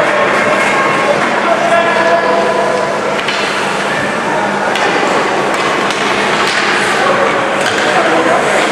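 Ice rink spectators chattering during a youth hockey game, with scattered sharp knocks of sticks and puck on the ice and a steady low hum in the arena.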